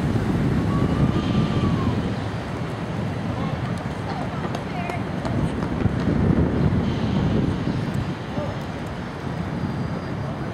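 City street noise: passing traffic and wind rumbling on the microphone, swelling twice, with faint distant voices.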